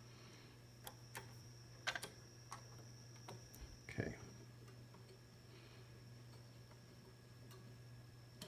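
Several scattered sharp clicks in the first four seconds as the range knobs on bench test equipment (a signal generator and an HP 1741A oscilloscope) are turned, over a faint steady hum and a thin high whine from the running equipment.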